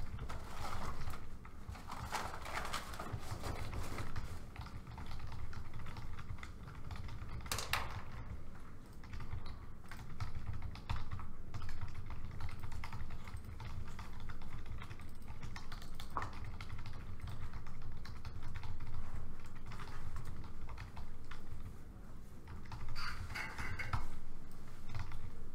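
Typing on laptop keyboards: irregular runs of clicking keystrokes over a steady low room hum.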